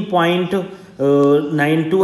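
A man speaking in a lecturing voice, with one word drawn out about a second in.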